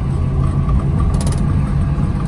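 1968 Chevrolet Camaro being driven, heard from inside the cabin: a steady low engine and road rumble.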